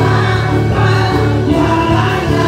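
Live gospel worship song: a woman leads the singing into a microphone while a group of backing singers sings with her, over a band of electric bass, drum kit and keyboard.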